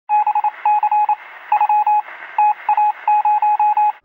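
Electronic beeps at a single steady pitch, short and some longer, in a quick irregular on-off pattern like a telegraph signal, with a faint hiss between them. They are an intro sound effect.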